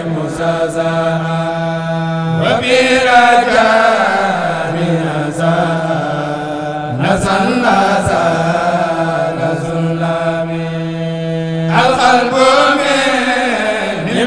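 Men chanting a Mouride khassida, a sung Arabic devotional poem, without instruments. They draw each note out for several seconds before gliding to a new pitch, over a steady low held tone.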